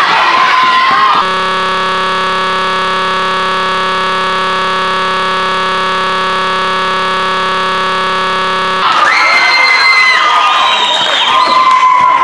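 A steady, unchanging buzzing tone with many overtones, starting about a second in and cutting off sharply some seven and a half seconds later. Before and after it comes gym noise with short high squeaks.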